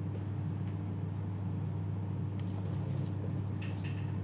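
A steady low hum with a few faint clicks: the background hum of the studio's audio, heard in a gap with no speech or music.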